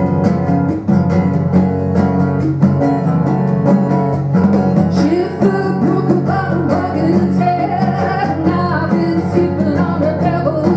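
A live band playing a steady groove on strummed acoustic guitar, electric bass guitar and hand-played congas. A singing voice comes in about halfway through.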